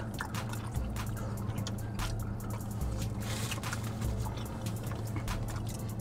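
Quiet background music with a steady low bass, under wet chewing and mouth sounds of people eating chicken wings, with a few short smacks.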